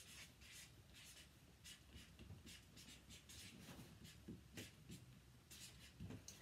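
Felt-tip marker writing on a pad of chart paper: faint, irregular scratchy strokes as the letters are drawn.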